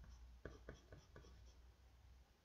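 Faint pencil strokes on paper: four short, quick scratches about a quarter of a second apart, over a low steady hum.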